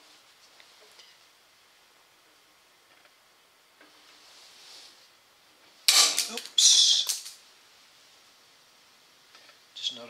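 Two loud metal clatters close together about six seconds in, from a wrench that had been lying in the path of the sheet-metal brake's leaf and stopping the bend. Before them there are only faint ticks.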